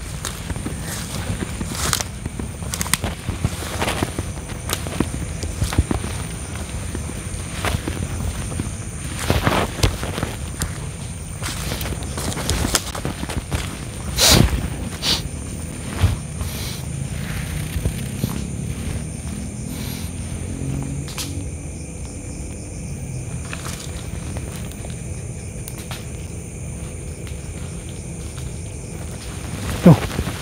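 Footsteps and rustling through forest undergrowth, with scattered knocks and handling noise over a steady low rumble; one knock about 14 seconds in is the loudest.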